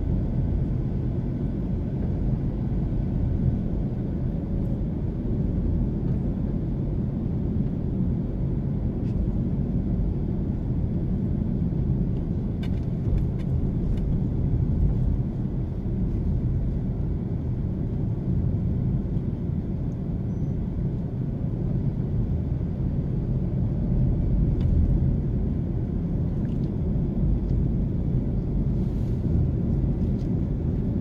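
A car driving at low speed: steady low rumble of engine and road noise.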